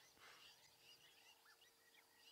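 Near silence: faint, scattered short bird chirps over a quiet outdoor background, with a faint steady tone underneath.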